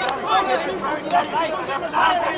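Many voices overlapping and calling out at once, an arena crowd's chatter and shouts, with a few sharp clicks.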